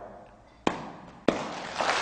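Two sharp single claps about half a second apart, then applause from the audience spreading and building toward the end.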